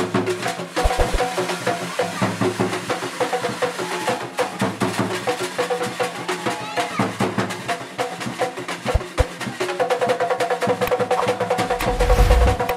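Drums played by hand in a fast, steady rhythm of sharp strokes and knocks, with voices over the drumming.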